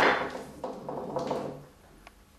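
A paintbrush being set down and items handled on a painting table: a knock, then a few light clatters and rustles that fade toward the end.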